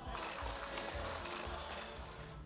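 Soft background music under faint applause, a light crackling patter of clapping hands that thins out near the end.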